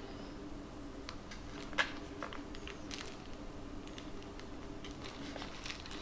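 Faint scattered clicks and crinkles as a small knife blade cuts pieces off sticks of Milliput two-part epoxy putty and the hands handle the plastic wrapping. A faint steady low hum runs beneath.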